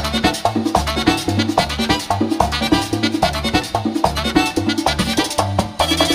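Live Dominican merengue típico band playing an instrumental passage, with no singing. Button accordion runs over a fast, driving beat of tambora, congas and electric bass.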